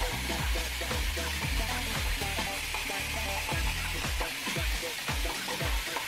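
Background music with a beat of deep bass notes that drop in pitch, over a steady rustling hiss of a bristle brush being drawn through damp hair.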